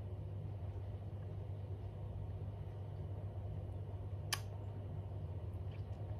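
Steady low hum in a small room, with a single short click about four seconds in.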